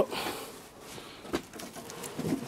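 A single light click about two-thirds of the way through, over a faint outdoor background.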